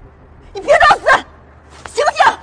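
A young woman's high-pitched, distressed voice calling out twice in quick succession, urging an unconscious man to wake up.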